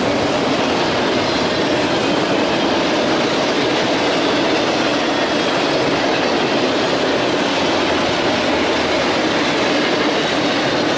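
Double-stack intermodal container train rolling past close by: a steady, loud rumble of steel wheels on rail as the well cars go by.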